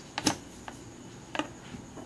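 A handheld lighter being flicked, four or five short, sharp clicks at uneven spacing as it is struck to get a flame.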